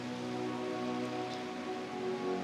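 Soft, sustained keyboard chords: long held notes that shift to a new chord about half a second in, over a faint hiss.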